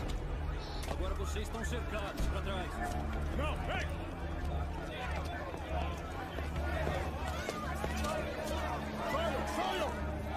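Several voices shouting over one another with no clear words, over a low, steady music drone.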